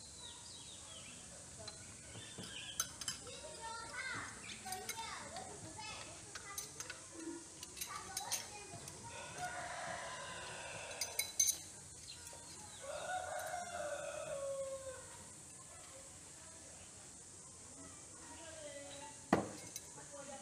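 A rooster crowing twice in the background, the second crow falling away at its end. Light metal clinks of throwing knives being pulled from a wooden target and gathered, with one sharp knock near the end.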